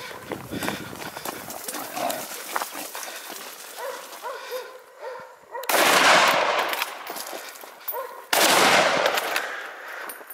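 Hunting dogs yelping and barking, then two gunshots about two and a half seconds apart, each with a long echo, fired at running wild boar.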